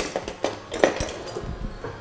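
A few sharp knocks and clatters of kitchen utensils against a cutting board and counter, the loudest a little under a second in.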